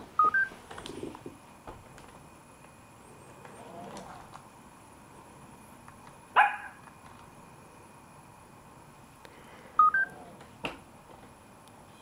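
BabyAlpha robot dog's electronic sounds as it does a shake-hands trick: a quick rising two-note beep about half a second in and again near ten seconds, and one short synthetic bark a little past six seconds, with a few soft clicks in between.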